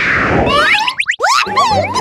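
Cartoon sound effects: a whoosh fading out, then a quick run of boing-like sounds gliding up and down in pitch. Children's music starts about a second and a half in.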